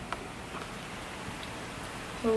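Faint, steady hiss of outdoor background noise, with a light click just after the start.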